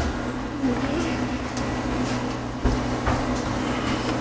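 A steady low hum with faint scraping, and two light knocks between two and a half and three seconds in, as the Sherline mill's saddle is worked along its dovetail base to slide it off.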